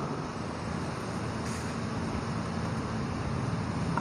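Steady background noise: an even hiss and low rumble with no distinct events.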